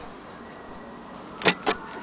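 Two short, sharp knocks close together near the end, over a faint steady hiss.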